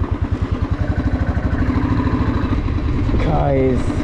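Motorcycle engine running while being ridden. It has an even low pulsing beat that blends into a steadier sound about halfway through.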